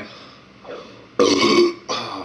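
A man burps loudly once, about a second in, lasting about half a second, with a shorter throat sound right after near the end.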